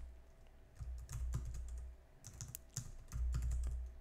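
Typing on a computer keyboard: short runs of key clicks with brief pauses between them.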